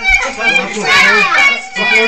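Several children shouting and squealing excitedly as they play, their high voices overlapping.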